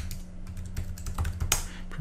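Computer keyboard typing: a run of separate key taps, with one harder tap about one and a half seconds in, over a faint steady low hum.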